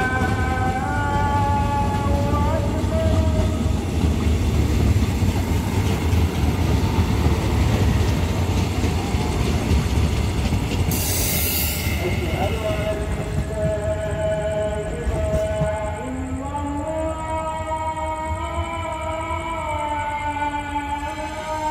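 KTM Class 83 electric multiple unit running past as it comes into the station: a steady low rumble of wheels on rail, with the electric traction motors whining in tones that step in pitch. A short hiss comes about eleven seconds in.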